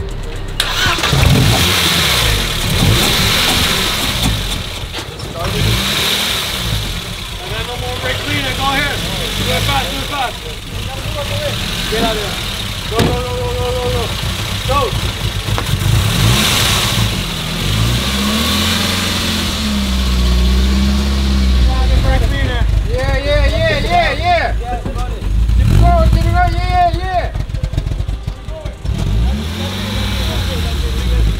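Mercedes-Benz 190E 2.5-16 Evolution II's 2.5-litre four-cylinder engine running with repeated rises and falls in revs as the throttle is blipped, kept alive on the gas after a stubborn no-start.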